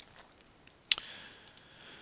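A single sharp computer-mouse click about a second in, with a few much fainter ticks around it.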